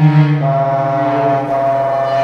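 Bassoon and cello playing long held low notes together, with the upper notes shifting pitch about half a second in.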